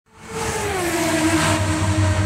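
Podcast intro audio fading in quickly: a noisy, rushing, engine-like sound whose tones slide down in pitch during the first second, then hold steady over a low pulsing bass.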